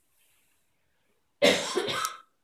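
Near silence, then a person coughing loudly near the end, a sudden harsh burst.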